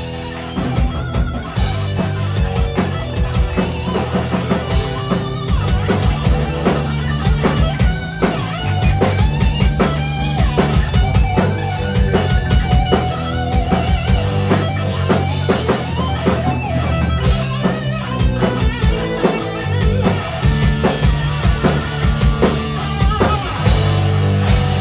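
Live rock band playing a hair metal song: distorted electric guitars, bass guitar and a drum kit keeping a steady beat, loud throughout.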